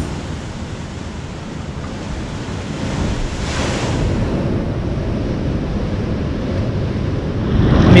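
Atlantic waves surging into a lava-rock sea cave and its rock pool, with a wave breaking at the cave mouth about three and a half seconds in.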